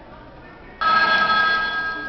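A bell rings once, starting suddenly and loudly, with a ringing tone that holds for about a second before fading.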